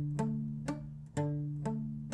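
Acoustic guitar played with a palm mute: a D-chord arpeggio picked down, up, up on the fourth, third and second strings, one note about every half second, each note fading under the muting palm.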